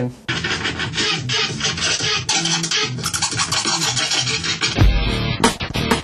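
DJ turntable scratching over music: rapid, choppy back-and-forth strokes, with a few deep bass hits near the end.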